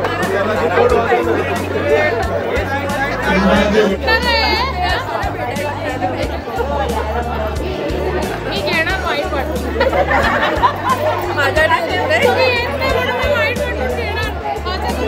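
Many people chattering and exclaiming at once, with excited high voices, over background music with a repeating bass line.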